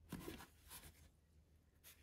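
Near silence, with a few faint soft rustles and scrapes of hands handling an action figure's cloth robe, the clearest just after the start.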